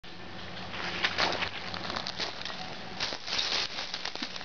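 Footsteps crunching and rustling through dry leaf litter, irregular crackles as a person walks in and crouches.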